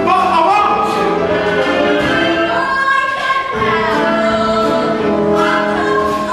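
A woman singing a musical-theatre song in held, wavering notes over instrumental accompaniment.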